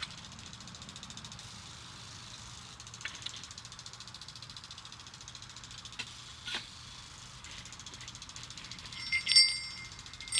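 Brass sleigh bells mounted on a wooden board jingling near the end, in a couple of short rings as the board is handled; before that only a few faint handling clicks.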